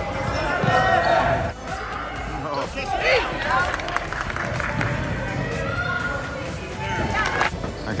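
A basketball bouncing on a hardwood gym floor as a player dribbles, under the shouts and chatter of spectators.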